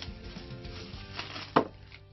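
Hands handling a plastic bag around a camera accessory, with a smaller click and then one sharp, loud tap about one and a half seconds in, over soft background music.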